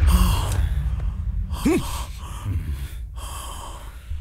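A man's short gasp a little before the middle, over a low rumble that fades away.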